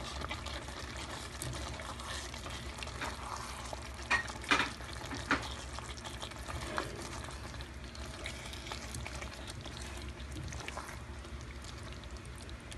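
Beef and baby corn being stirred in a pan of simmering oyster sauce, with a metal spoon scraping and clinking against the pan a few times about four to five seconds in.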